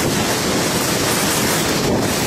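Steady, loud rush of wind buffeting the camera's microphone while skiing downhill at speed, mixed with skis running over packed snow.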